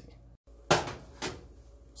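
A sharp knock, then a fainter one about half a second later, just after a brief gap of silence.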